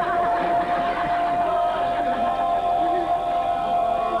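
Male a cappella group singing: one voice holds a single long, high note while the other voices move through lower parts beneath it.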